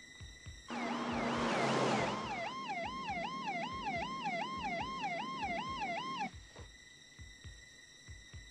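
Police car siren wailing fast, rising and falling about two and a half times a second, with a rush of car noise as it comes in. It cuts off suddenly near the end. Before and after it, a quiet electronic music score with a low steady pulse.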